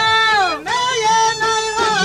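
Albanian folk music: a high melody line that slides down in pitch about half a second in, then picks up again, over a steady lower held drone note.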